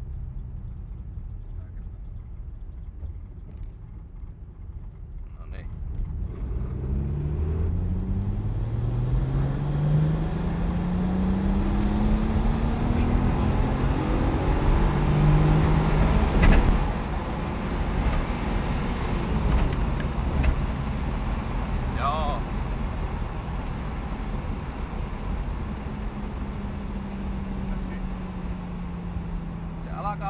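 Turbocharged BMW M50 straight-six heard from inside the E30's cabin, pulling hard under load on a road-tuning run: its note climbs steadily and grows louder for about ten seconds. It peaks about halfway through with a brief sharp noise, then drops back to a steadier, lower cruise.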